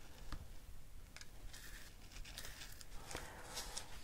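Faint, scattered scratching and rustling of paper as a pick-up tool drags through gritty embossing powder and lifts a paper die-cut out of it.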